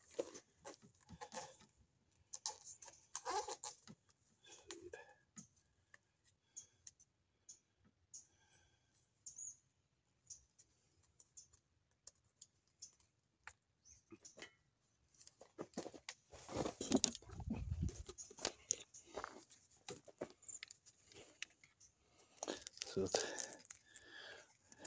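Hands working at a bicycle's drop handlebar: scattered small clicks and rustles, with a louder tearing, rustling stretch about two-thirds of the way through and another shortly before the end.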